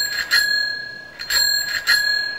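Bicycle bell rung twice: two quick trills about a second and a half apart, the bell's tone ringing on and fading after each.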